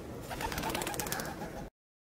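Pigeons, with a rapid fluttering starting shortly in; the sound cuts off abruptly near the end.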